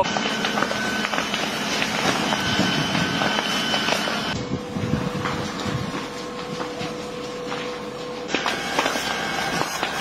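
A large wildfire burning at close range: a steady rushing noise scattered with crackles and pops. The sound changes abruptly twice, and a faint steady tone runs through the middle part.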